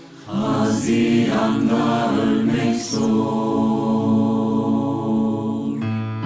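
A vocal ensemble singing in several parts, coming in just after the start with held chords and two sharp hissing 's' consonants in the words.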